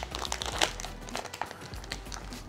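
Foil booster-pack wrapper crinkling and crackling irregularly in the hands as it is handled and opened.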